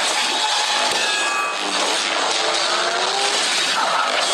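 Dense action-film effects mix: loud continuous rushing noise with several slow gliding tones running through it.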